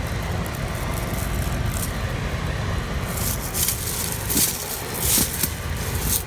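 Dry, bolted lettuce stalks rustling and crackling as they are pulled and broken off by hand, with two louder crackly bursts a little past halfway and near the end, over a steady low rumble.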